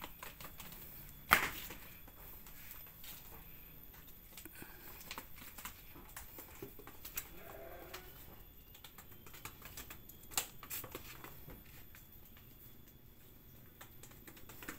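A young Garut sheep's hooves clicking irregularly on stone paving as it walks, with one sharper knock about a second in.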